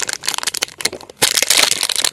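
Clear plastic wrapping of a toy blind pack crinkling and crackling in the hands as it is opened, with irregular clicks and a denser rustle about one and a half seconds in.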